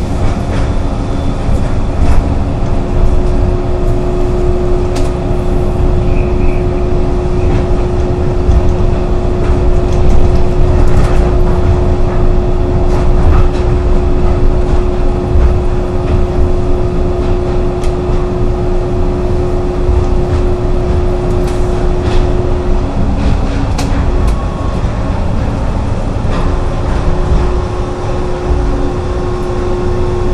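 Interior sound of the O'Hare airport people mover, a rubber-tyred automated VAL 256 tram, running along its guideway. It is a heavy, steady rumble with a constant motor hum that breaks off about 23 seconds in and comes back a few seconds later, with occasional knocks from the guideway.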